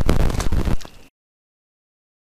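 Splashing as a largemouth bass is let go and drops back into the water, with a couple of sharp knocks. The sound then cuts off to dead silence about a second in.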